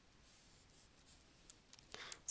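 Near silence, with a few faint taps of a stylus on a pen tablet in the second half as lines are drawn.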